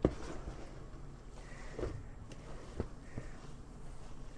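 A hand stirring and squeezing damp vermiculite casing mix in a plastic tub: soft, grainy rustling and crunching with a few short clicks.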